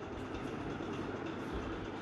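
Domestic sewing machine running steadily, stitching a seam through layered cloth.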